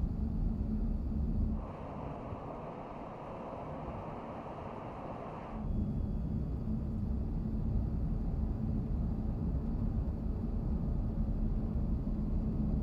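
Steady low rumble of road and tyre noise inside the cabin of an all-electric 2026 Mercedes-Benz CLA on the move, with a low steady hum and no engine note. Between about one and a half and five and a half seconds in it gives way to a quieter, hissier stretch, then the rumble returns.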